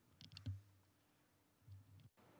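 Near silence: room tone with a few faint clicks about half a second in.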